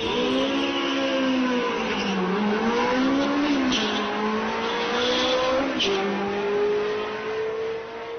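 Car engine at full acceleration on a drag run, its note climbing and dipping through gear changes, with a clear drop at an upshift about six seconds in.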